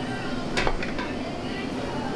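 Metal pans and utensils clinking a few times about half a second in, over the steady background noise of a commercial kitchen range.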